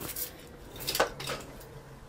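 A few light, scattered clicks and knocks, like small hard household objects being handled.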